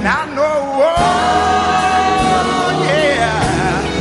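Old-school gospel song: a singer over a band, with the bass dropping out briefly at the start and coming back about a second in under one long held note.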